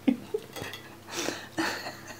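Fork and knife clinking and scraping on a ceramic plate while cutting food, a few short sharp clinks with the loudest at the start, then softer scraping.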